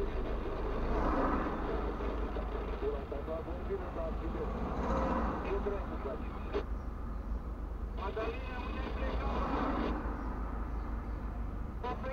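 Steady low engine rumble inside a car standing still in traffic, with muffled voices coming and going over it and an occasional single click.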